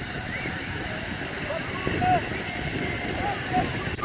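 Distant shouts and calls from young footballers and sideline spectators, with wind rumbling on the microphone. Louder calls come about two seconds in and again near the end.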